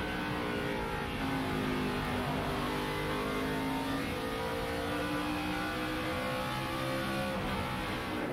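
NASCAR Nationwide stock car's V8 engine heard through its in-car camera microphone, running hard at racing speed. Its pitch dips about halfway through, then climbs steadily again as the car gets back on the throttle.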